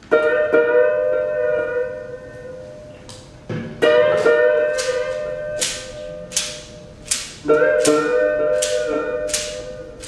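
Slow, sparse live music of plucked strings and percussion. Three sustained string notes, each slightly bending in pitch and fading, come about every three and a half seconds, with sharp high taps between them.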